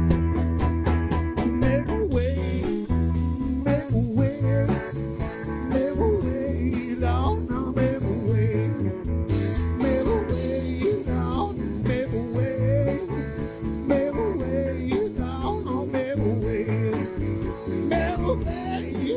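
Live blues-rock trio playing: electric guitar over drum kit and a strong steady low end, with a man singing into the microphone.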